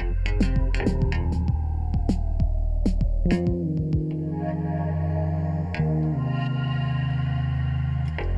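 Synthesizer music: a held bass drone under quick percussive clicks and a slowly falling pitch sweep, which gives way to sustained, distorted low synth chords that change about six seconds in.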